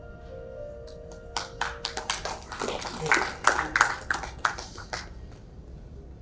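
Steady background music with held tones stops about two seconds in, and scattered audience clapping follows for about three seconds before trailing off.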